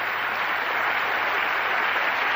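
Snooker audience applauding steadily, acknowledging a century break.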